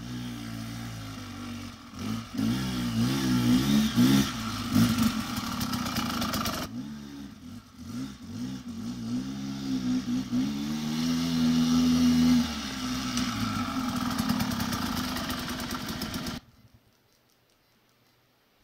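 Off-road motorcycle engine running on a downhill dirt trail, its pitch rising and falling with the throttle, with some clatter. It cuts off suddenly near the end.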